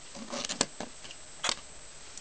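Light handling sounds from a small hand-made solar bug being moved and set down on a wooden table: a soft rustle and two sharp clicks, about a second apart.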